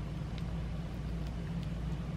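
Steady low rumble of background noise, with a few faint soft clicks.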